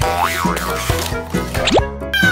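Upbeat children's background music with added cartoon sound effects: a springy boing that swoops up and back down just after the start, and a quick rising slide-whistle-like sweep near the end.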